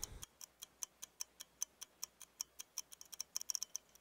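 Faint clock-ticking sound effect laid over a running stopwatch timer, about four or five sharp ticks a second, quickening near the end as the footage is fast-forwarded.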